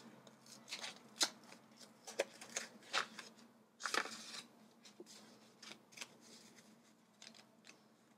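Paper tags rustling and sliding against each other as they are pulled out of a thin translucent envelope and handled, in a series of short, faint rustles, the strongest in the first half.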